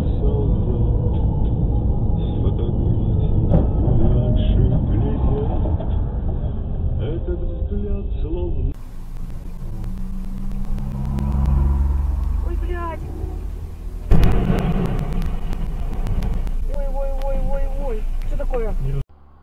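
Vehicle cabin rumble from a dashcam, then a different engine running steadily. About two thirds of the way in comes a sudden loud crash as a truck loaded with timber overturns onto the road, followed by noise that goes on.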